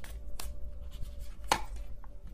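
Tarot cards being shuffled and handled on a table: scattered light taps and snaps, the loudest about one and a half seconds in.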